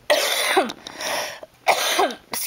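A woman coughing three times, the first and last coughs the loudest; she has been sick.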